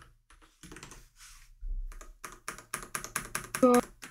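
Typing on a computer keyboard: scattered key clicks at first, then a fast run of clicks in the second half as a timestamp is entered. A brief voice comes in near the end.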